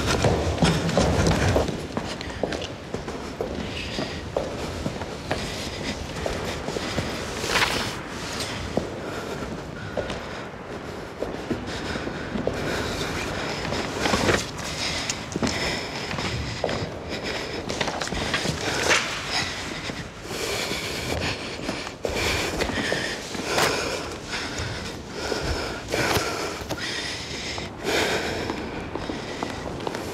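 Quick footsteps on a stone mosaic floor in a large, echoing hall, with irregular sharp steps and knocks throughout.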